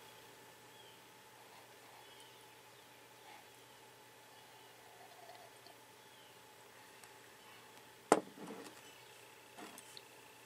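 Near-quiet room tone while coffee is sipped from a mug, broken by one sharp click about eight seconds in, followed by a few soft mouth and handling sounds.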